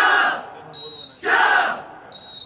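A squad of commando trainees shouting together in unison with each elbow strike of a drill: one loud shout at the start and another about 1.3 seconds later.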